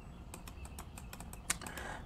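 A run of light clicks from a computer mouse and keyboard, irregularly spaced, the sharpest about one and a half seconds in, over a faint steady hum.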